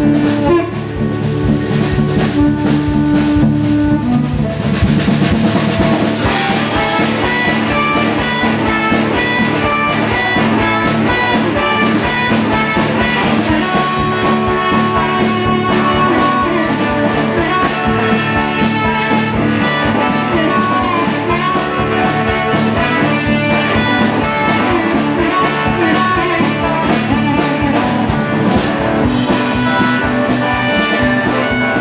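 Blues band playing live: electric guitar and amplified harmonica over a steady drum-kit beat, with no singing.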